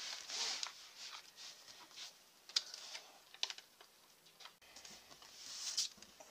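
Faint, scattered light taps and short paper rustles of hands peeling and pressing paper stickers onto a spiral planner page, a handful of separate clicks spread through.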